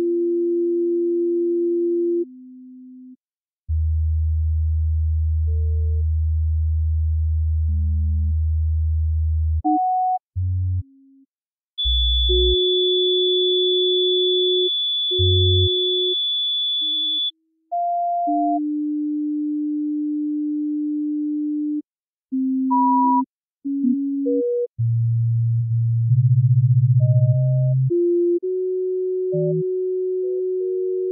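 Sparse electronic music made of pure sine-wave tones: single held notes at changing pitches, some lasting several seconds, with a deep low tone under some of them and short silences between notes. About twelve seconds in, a high thin tone sounds for about five seconds.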